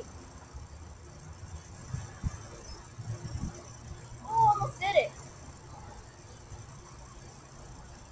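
Trampoline mat thumping under a few bounces about two to three and a half seconds in, then a short wordless vocal cry about halfway through as the jumper lands on hands and knees.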